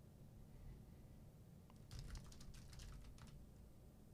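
Faint typing on a computer keyboard: a quick run of light key clicks starting about two seconds in and lasting a second and a half, over near-silent room tone.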